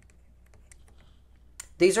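Faint, scattered light clicks and taps of a pen stylus writing on a graphics tablet, then a man's voice starting just before the end.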